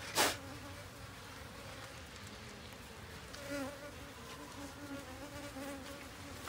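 Honeybees buzzing close by an open box hive, the buzz wavering up and down in pitch as bees fly about, louder from about three seconds in. A short rush of noise comes right at the start.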